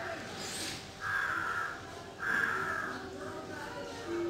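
Two harsh bird calls, each lasting about two-thirds of a second, the second following about half a second after the first ends.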